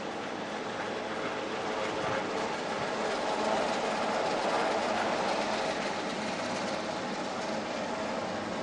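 Helicopter hovering overhead: a steady drone of rotor and turbine engine, a little louder in the middle.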